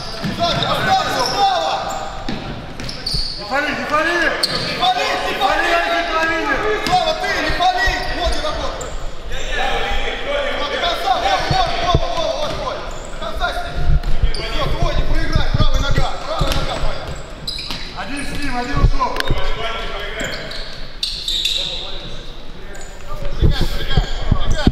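Futsal ball being kicked and bouncing on a wooden hall floor, with short thuds that echo in the large hall. Voices call out from about three seconds in to about thirteen seconds.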